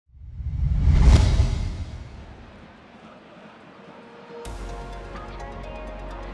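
Broadcast intro sound effect: a deep bass whoosh that swells to a peak about a second in and fades away over the next two seconds. About four and a half seconds in, electronic theme music with a steady bass starts suddenly.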